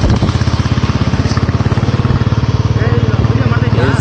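An engine running steadily, with a rapid, even pulse and a strong low hum.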